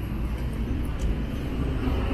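Outdoor street ambience: a steady low rumble of road traffic, with a couple of faint ticks.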